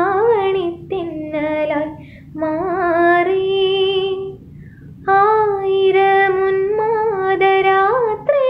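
A woman singing a Malayalam film song solo, with no accompaniment. She sings three held, melodic phrases with short breaths between them.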